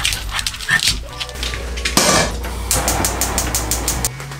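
Pet dogs making vocal sounds, with a run of rapid crackles in the second half.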